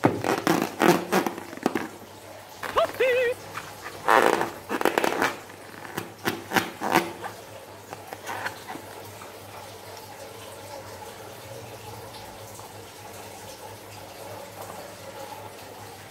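A slime-filled rubber balloon squeezed and rubbed in the hands: bursts of squishing and rubber rubbing through the first seven seconds, with a short squeak about three seconds in, then only faint handling.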